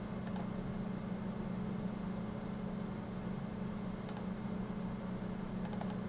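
A steady low hum with a few faint computer mouse clicks: one just after the start, one about four seconds in, and a couple near the end.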